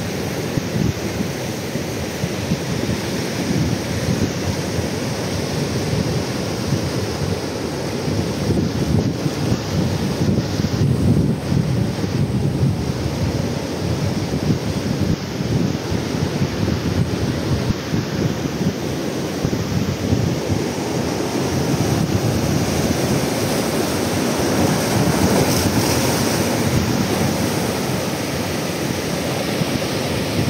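Ocean surf breaking over rocks and washing through shallow tide pools, a steady rushing wash with a low rumble, swelling a little past the middle. Wind buffets the microphone.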